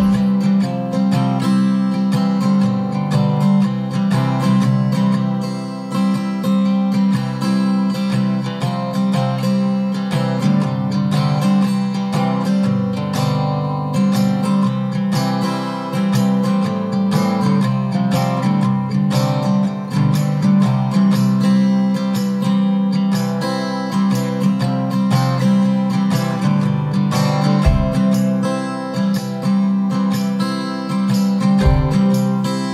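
Background music led by a strummed acoustic guitar, at a steady level throughout.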